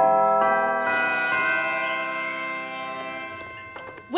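Church bells ringing: a few strikes in the first second and a half, then the ringing slowly fades away.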